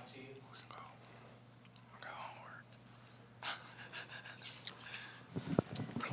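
Faint, off-mic murmured speech in a quiet room over a steady low electrical hum, with a louder voice starting near the end.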